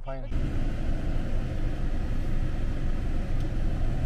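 Steady rumble and hiss of motor-vehicle noise, starting abruptly just after a spoken word and holding level.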